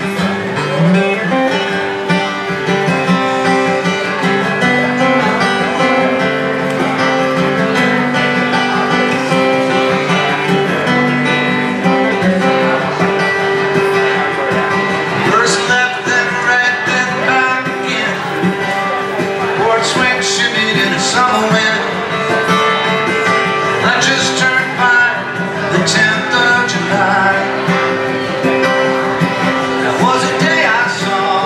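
Live folk music: a steel-string acoustic guitar strummed and picked, playing the opening of the song.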